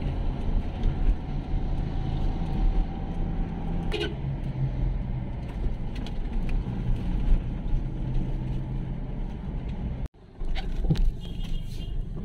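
Steady engine and road rumble inside the cabin of a moving Toyota Innova, with a single sharp click about four seconds in. Near the end the sound briefly drops out and changes.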